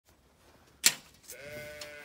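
A sharp knock, then a Zwartbles sheep gives one long, steady bleat lasting about a second.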